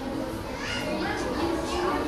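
Background murmur of voices, with children talking and playing.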